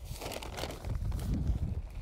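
Handfuls of potting soil being scooped out of a plastic soil bag and dropped into a plastic bucket: a soft, irregular rustle of soil and bag.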